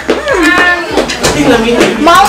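A person's voice, drawn out, its pitch sliding down and back up, amid chatter.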